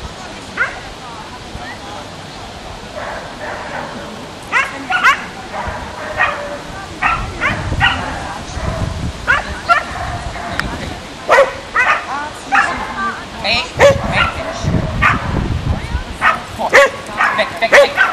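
A dog barking and yipping in short, repeated calls, which come more often in the second half.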